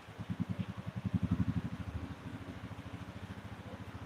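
A small engine starts up a moment in, with a rapid, even low pulsing. It is loudest for about a second, then settles to running steadily.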